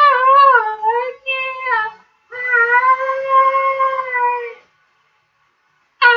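A man singing unaccompanied, holding long high vowel notes in two phrases with a wavering pitch and a short break about two seconds in. The voice cuts off about a second and a half before the end.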